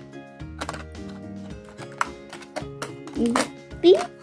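Background music with steady held notes, a few short light clicks, and a child's voice briefly near the end.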